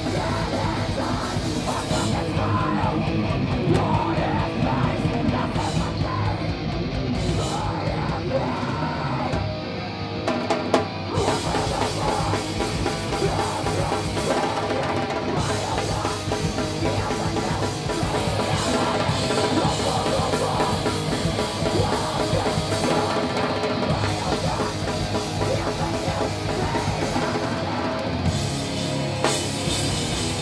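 A heavy rock band playing live: drum kit, guitars and bass, with a vocalist singing into a microphone, the music running on without a break.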